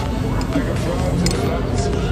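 Restaurant dining-room noise: steady background chatter and music, with a few short clinks of metal cutlery.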